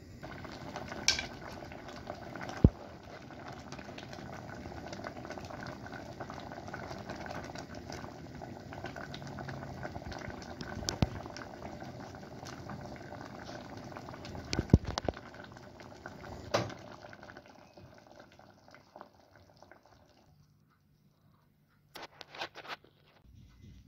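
Red lentil and quinoa soup bubbling steadily at a simmer in a metal pot, with about five sharp knocks of a wooden spoon against the pot; the loudest knock comes about three seconds in. The bubbling dies away about seventeen seconds in.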